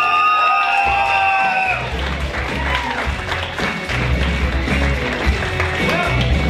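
A group of voices finishes a song on a long held high note. A steady bass beat of music comes in under it, along with audience applause and cheering.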